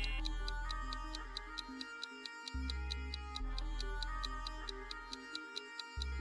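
Background music with rapid, evenly spaced clock-like ticks over a steady low bass line: a countdown-timer effect marking the time left to choose.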